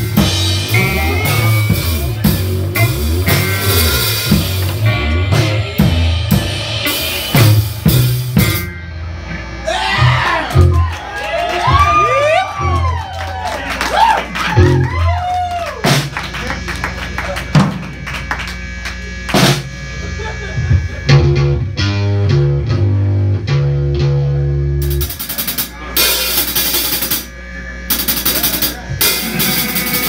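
Live rock band playing: drum kit with snare and bass drum, electric guitar and keyboard. A stretch in the middle has tones that slide up and down in pitch over the drums.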